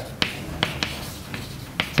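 Chalk writing on a blackboard: a run of sharp clicks and taps as the chalk strikes and strokes the board, about half a dozen in two seconds.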